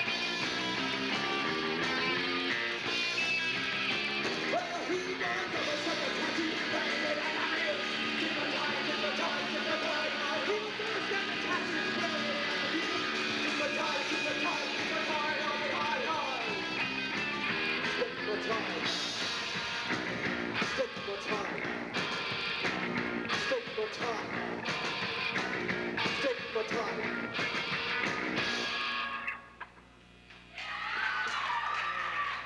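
A rock band playing live: electric guitars, bass and drums. The sound cuts off abruptly near the end.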